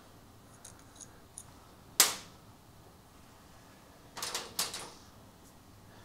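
Small metal airbrush parts clicking against a stainless steel worktop: one sharp click about two seconds in, a few faint ticks before it, and a quick run of lighter clicks a little past four seconds.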